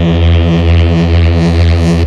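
Loud techno in a DJ set: a low, buzzy bass synth drone pulsing about twice a second, with no kick drum.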